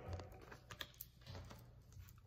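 Near silence: room tone with a low hum and a few faint, short clicks about a second in.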